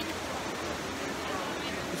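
Steady rush of falling water from the Trevi Fountain's cascades, with the voices of a crowd mixed in.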